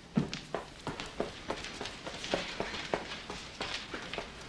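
Quick footsteps of a person running across a hard floor, about three steps a second.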